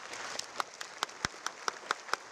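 Audience applauding: a dense, steady patter of many hands, with a number of louder single claps standing out from it.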